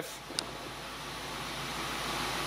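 Steady noise inside the cabin of a car with its engine running, the hiss of idle and ventilation growing slightly louder, with one faint click about half a second in.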